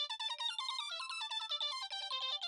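Mobile phone ringing with an incoming call: a melodic ringtone of quick, short, high-pitched electronic notes, several a second.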